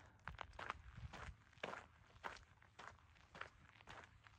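Faint footsteps on a gravel trail at a steady walking pace, about two steps a second.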